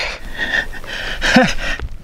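A man's breathy laughter and gasps, in short bursts, with one brief voiced squeak about one and a half seconds in.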